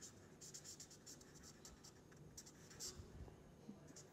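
Felt-tip marker writing on paper: a faint run of short scratchy strokes as a word is written out.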